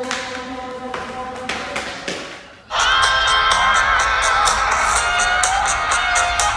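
A few sharp clicks of carrom pieces being struck on the board. About two and a half seconds in, loud guitar music starts suddenly.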